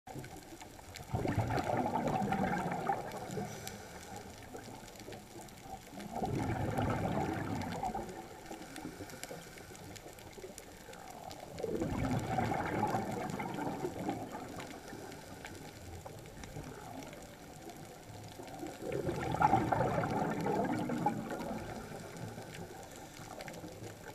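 A scuba diver's exhaled breath bubbling out of the regulator underwater. There are four bubbly bursts, each about two seconds long, coming every five to seven seconds in the rhythm of breathing.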